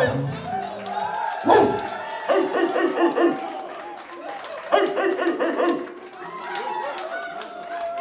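Live band music: saxophone phrases together with a voice at the microphone, and little bass underneath. There are two sharp loud accents, one about a second and a half in and one near five seconds.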